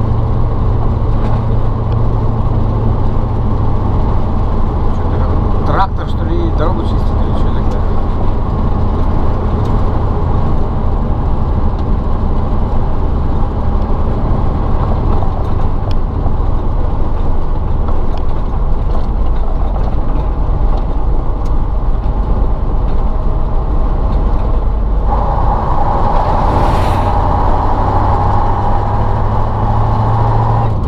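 Ural logging truck's YaMZ-238 V8 diesel running steadily while the truck drives. About 25 seconds in, a louder, higher rushing sound joins as an oncoming vehicle passes, lasting to the end.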